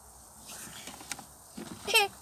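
A short, high-pitched voice sound from a young girl near the end, rising in pitch, after a fairly quiet stretch.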